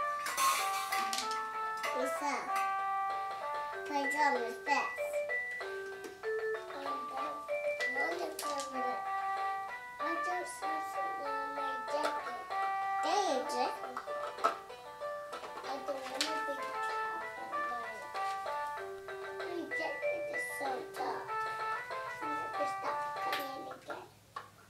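A toy electric guitar playing its built-in electronic tune, a melody of plain, steady beeping notes, with a small child's voice vocalizing over it and now and then a tap on a toy drum kit.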